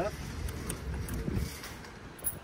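A few faint clicks of a key being worked in the rear door lock of a UAZ-452 "Bukhanka" van, over a low steady rumble.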